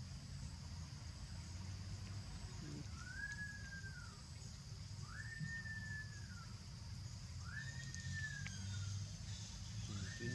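A baby macaque giving drawn-out whistly coo calls, three in a row about two seconds apart, each rising quickly and then sliding slowly down. A steady high insect drone runs underneath.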